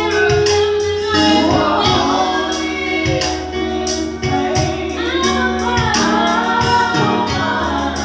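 Three women singing a gospel worship song through microphones, over instrumental accompaniment with a steady beat.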